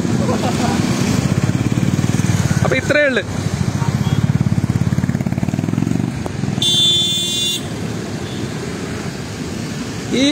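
A small motor vehicle's engine runs with a fast, even pulse, easing off a little after about six seconds. A vehicle horn sounds once, briefly, about seven seconds in.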